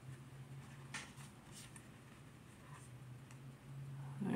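Faint handling noise of Pokémon trading cards: a few soft rustles and clicks, the clearest about a second in, over a low steady hum.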